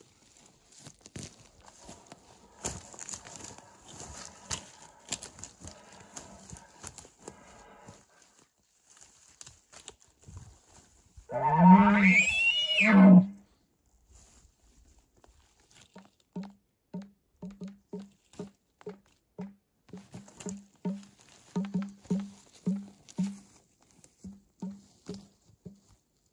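An elk bugle tube is blown in imitation of a bull elk's bugle: one call of about two seconds, about halfway in, opening and closing with a low grunt and sweeping up to a high whistle and back down. Before it, brush and twigs crackle. After it comes a run of short low thumps, about two a second.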